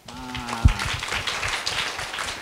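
Audience applause that starts suddenly as a demonstration ends, with a voice calling out briefly at the start.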